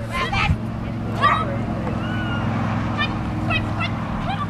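A steady low engine hum, with a person's voice calling out briefly twice over it.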